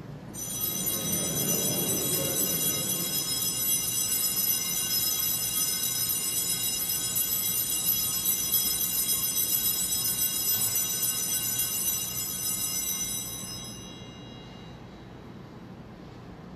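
Altar bells ringing continuously for the elevation of the chalice at the consecration, a bright high ringing that fades out about two seconds before the end.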